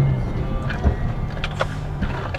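Car engine and road noise heard inside the moving car's cabin, a steady low hum, with background music over it. There is a sharp click a little under a second in.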